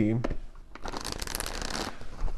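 A deck of tarot cards being shuffled: a dense papery rattle of many quick card flicks, starting about a second in after a brief lull.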